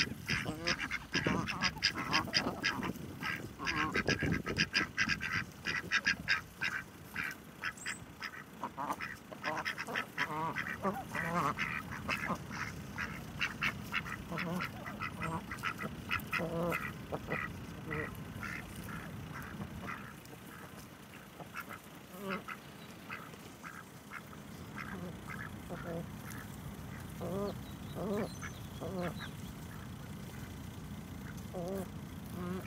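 Flock of domestic ducks quacking: rapid, near-continuous quacks through the first half, thinning to shorter, spaced calls later.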